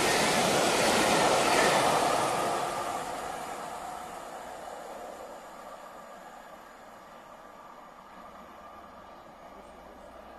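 Coaches of a steam-hauled train rushing through a station at speed with a loud rolling rumble. About two and a half seconds in the noise starts to fade, dying away over the next few seconds as the train recedes.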